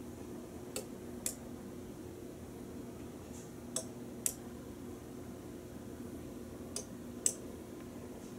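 Switching clicks from the sequencer driving a vintage Otis elevator floor indicator as its lamps step from floor to floor: pairs of sharp clicks about half a second apart, repeating about every three seconds, over a faint steady hum.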